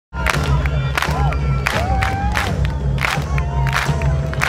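Concert crowd shouting and cheering over a live rock band, with a heavy steady bass and drum hits underneath.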